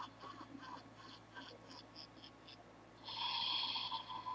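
Faint breath and mouth sounds close to a microphone: a string of short soft noises, then a long breath out about three seconds in.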